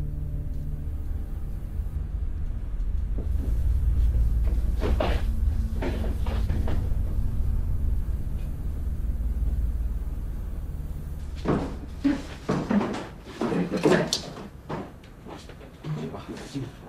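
Wooden cupboard doors and wooden carrying boxes knocking and clattering, several sharp hits in quick succession in the last few seconds. Before that there is a low steady rumble that stops about two-thirds of the way in.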